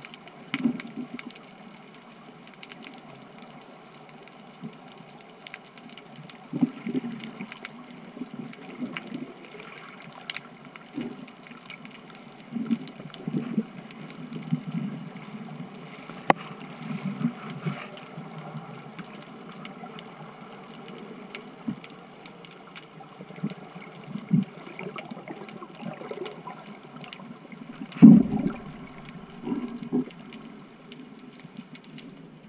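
Underwater sound picked up through a camera housing: a steady muffled water hiss with irregular low whooshes every second or two, and one louder whoosh near the end.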